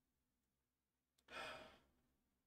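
A man sighs once, a short unvoiced exhale about a second and a half in; otherwise near silence.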